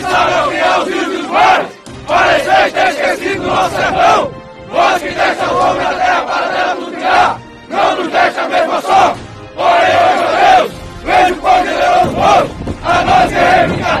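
A group of men shouting a chant together in Portuguese, in loud phrases of a few seconds each with short breaks for breath between them.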